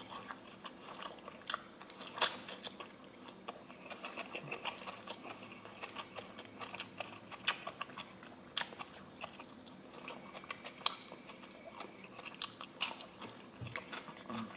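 A person chewing a mouthful of lo mein noodles and greens, with small crunches and mouth clicks throughout; one sharper click comes about two seconds in.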